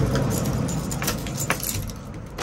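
A bunch of keys jangling while a key is worked in a front door's cylinder lock, with several sharp metallic clicks about halfway through.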